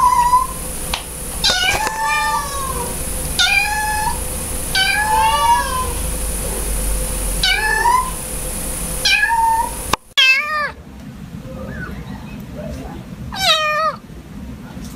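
Ginger kitten meowing repeatedly: about seven short, high meows over some ten seconds. Near the end come two wavering, quavering cries from another cat.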